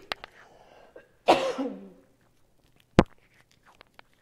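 A woman coughing in a coughing fit that she puts down to allergies: one hard cough with a falling voiced tail about a second in, and a sharp click near the three-second mark.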